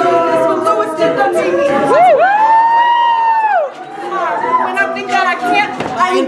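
A cappella group singing sustained backing chords over beatboxed vocal percussion. About two seconds in, a single voice swoops up into a long held high note that falls away shortly before four seconds, then the chords and beat come back in.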